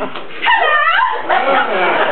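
Voices on stage, with one high voice rising and falling sharply in pitch about half a second in.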